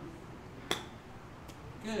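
A golf club strikes a ball off a practice mat on a short chip shot, one crisp click about two-thirds of a second in. A short spoken "good" follows near the end.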